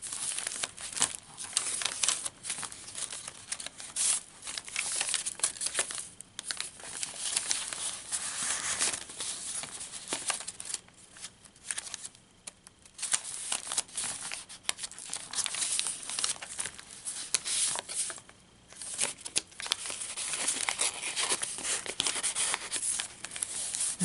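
Paper rustling and crinkling as the pages and paper pockets of a handmade junk journal are turned and handled. The rustling comes and goes irregularly, with a short lull about halfway through.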